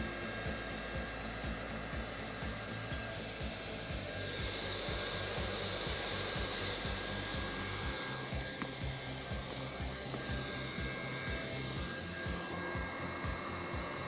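Hot-air welding gun blowing steadily with a hiss and a low hum as its flat tip strikes a welded seam in a rubber floor, melting the weld edges to darken and seal it. The hiss grows louder partway through, then settles back.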